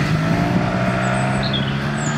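Yamaha TMAX 560 maxi-scooter's 560 cc parallel-twin engine running at a steady pitch as the scooter rides off, heard through its stock exhaust, which keeps the sound level very low.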